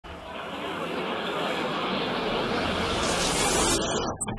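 A swell of rushing noise that builds steadily louder and brighter, then cuts off abruptly just before the end, leading into the start of the song.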